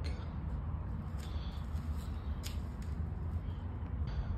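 Steady low outdoor background rumble with a couple of faint clicks, about a second in and again about two and a half seconds in.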